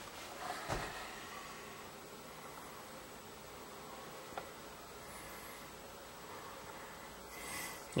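Quiet room tone with a faint steady hiss, soft rustles of a handheld camera being moved, and a single small click about four seconds in.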